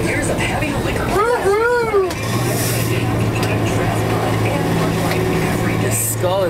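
Boat engine running with a steady low hum, which stands out clearly from about two seconds in, under loud wind and rushing-water noise.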